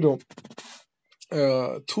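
A man speaking, broken by a pause that holds a quick run of short clicks over about half a second, then he starts speaking again.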